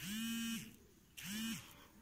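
A low, steady buzz that comes in pulses about half a second long with short gaps between them. Each pulse slides up in pitch as it starts and down as it stops.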